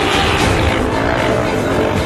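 Loud music with a stunt motorcycle's engine revving over it.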